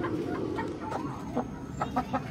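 Chickens clucking with short, soft calls, over a steady low rumble, with a few sharp clicks in the second half.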